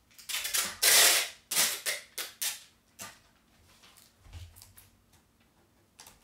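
Clear packing tape being pulled off the roll in rasping strips and pressed onto a cardboard box. The longest, loudest rip comes about a second in, followed by a few shorter ones, then quieter handling.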